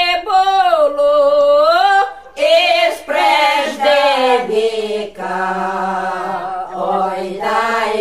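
Ukrainian folk ensemble, mostly women's voices, singing a carol a cappella in full open-throated folk style. A single voice line carries the first two seconds; after a short break the group comes in, and from about five seconds a low held note sits beneath higher parts.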